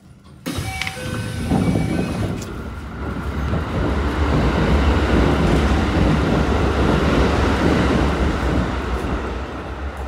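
Kintetsu electric commuter train running on the rails: a heavy, steady low rumble that starts abruptly about half a second in and grows louder over the next few seconds, with a few brief high tones near the start.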